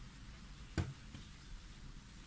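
Quiet room tone with a steady low hum, broken by one sharp tap a little under a second in and a fainter one just after.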